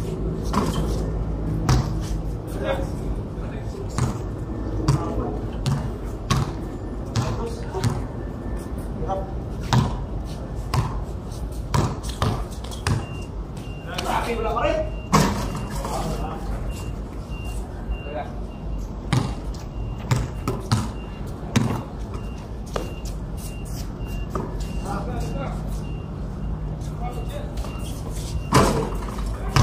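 A basketball bouncing on a concrete court in play, with irregular sharp thuds throughout and a loud impact about fifteen seconds in. Players' voices call out now and then over a steady low rumble.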